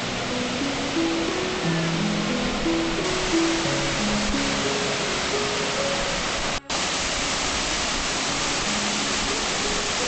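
Water pouring through the open sluices of a canal lock gate into the lock chamber: a heavy, steady rush, with soft background music laid over it. The sound cuts out for an instant about two-thirds of the way through.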